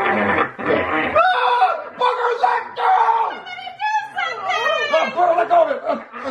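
Human voices acting out a puppet attack without words: a growl to begin, then drawn-out wailing and high-pitched screams that glide up and down in pitch, with a little laughter.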